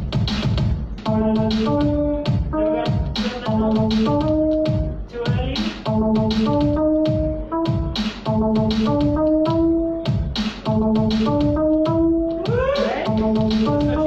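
Electronic loop playing back from Ableton Live: a steady drum beat of about four hits a second under a short repeating melody of a few stepped notes. A brief rising glide comes in near the end.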